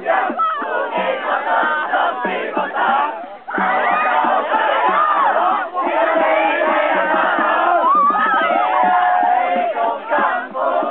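A group of people chanting and shouting a camp song together, loud and energetic. For the first few seconds a regular beat runs under the voices. After a short dip about three and a half seconds in, the voices come back as dense, overlapping shouts.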